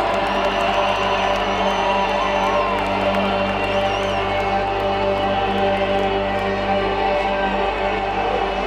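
Live stadium concert: loud, sustained droning chords over a cheering crowd. A long high whistle cuts through near the start, and shouted whoops rise and fall over it.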